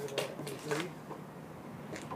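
Faint steady low hum of a small electric motor spinning a large gyro wheel as it precesses on its hanging pivot, with a few sharp clicks in the first second.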